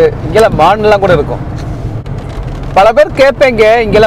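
Talking over the steady low hum of a car driving, heard from inside the cabin.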